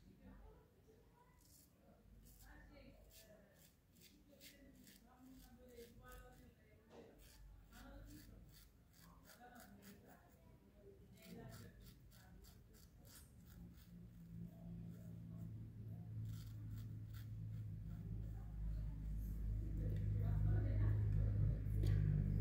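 Faint, crackling scrapes of a straight razor with a The Gentlemen blade cutting through lathered beard stubble, stroke after stroke. The blade cuts well but tugs a little rather than gliding. From a little past halfway a low hum rises steadily louder.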